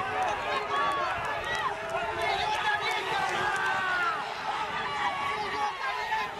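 Trackside crowd shouting and cheering during a horse race, many voices yelling over one another in rising and falling cries.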